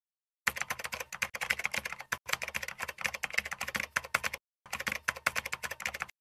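Keyboard typing sound effect: a fast, dense run of key clicks with a short pause a little past four seconds in, stopping suddenly at the end.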